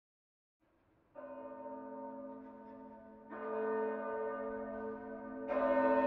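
Large swinging church bells of the St. John's Abbey bell banner ringing: three strokes about two seconds apart, each louder than the last, with each bell's hum still ringing under the next stroke.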